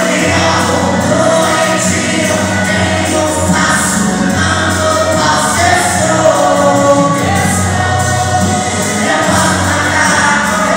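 A man singing a gospel worship song into a handheld microphone, amplified over a PA with musical accompaniment underneath.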